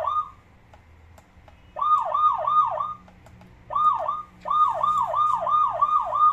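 Electronic police-siren sound from a children's ride-on toy motorcycle's sound module: a fast repeating falling wail, about four sweeps a second. It cuts out and restarts several times as the siren button is pressed, and runs on steadily near the end.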